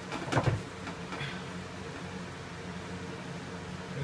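Electric fan running with a steady hum. About a third of a second in comes a brief crinkling rustle of a plastic scrim patterning sheet being pressed against the bulkhead, with a fainter rustle about a second in.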